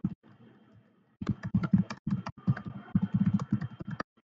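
Typing on a computer keyboard: quick runs of keystrokes, a pause of about a second near the start, then steady typing.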